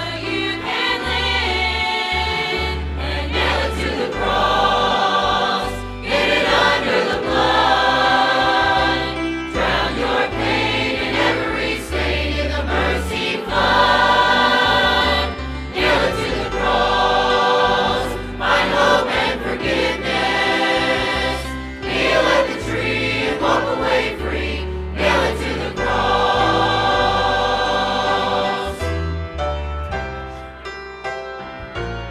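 Large church choir singing a gospel song in phrases over sustained instrumental accompaniment with a deep bass line.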